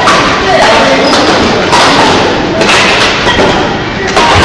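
Badminton rally sounds in a large hall: repeated thuds of footfalls on the court floor and racket strikes on the shuttlecock.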